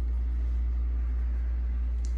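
Steady low hum of room noise, a deep even drone with nothing else happening.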